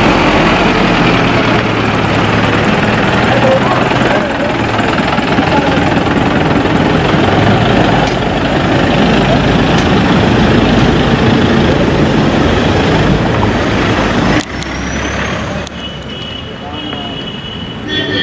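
SUV engines running as the cars pull away, mixed with a crowd's overlapping voices; the sound drops abruptly about fourteen seconds in.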